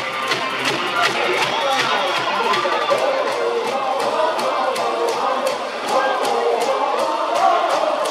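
Ballpark cheer music with a steady beat, a 'chance' cheer song for a scoring opportunity, with the crowd singing and chanting along.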